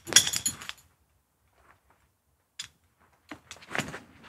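Metal buckles and hardware of a Petzl Astro rope access harness clinking and rattling as the waist belt is fastened and tightened. A cluster of clinks comes in the first second, then a pause, then a few more clicks near the end.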